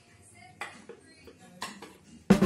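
A knife clinking and scraping against a white ceramic cake stand while slicing a chocolate bundt cake, with a few short clinks about half a second in and again near the end.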